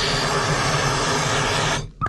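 Hand-held MAP gas torch running, its flame blowing a loud, steady hiss into paper and cardboard to light it. The hiss cuts off suddenly just before the end.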